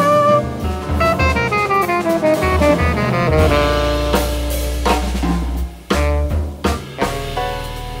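Jazz trio of tenor saxophone, piano with synth bass, and drum kit playing together. A held note gives way to a descending run of notes. A sustained low synth-bass note comes in about three and a half seconds in, with sharp drum hits through the middle of the passage.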